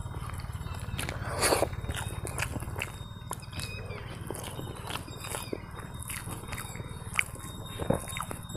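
Fingers breaking up and pinching food on a clay plate: a run of small crackles and soft clicks, with a louder crunchy rustle about one and a half seconds in. A steady low rumble lies underneath.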